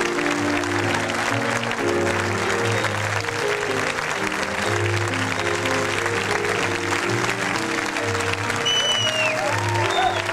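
Theatre audience applauding over live piano and upright bass music. A short whistle rises and falls near the end.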